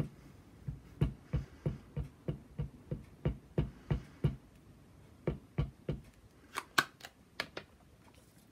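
An archival ink pad dabbed repeatedly onto a rubber stamp on an acrylic block: a run of soft taps, about three a second, with a short pause partway through. A few sharper clicks come near the end.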